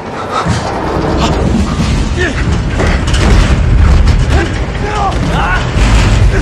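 Dense action-film fight sound mix: a continuous loud low rumble with mechanical clanks and rattles, and short vocal grunts over it.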